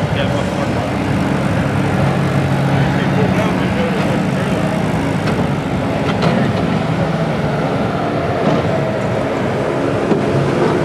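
A front loader's engine runs steadily at close range as its bucket pushes wrecked demolition derby cars, with a few faint knocks of metal.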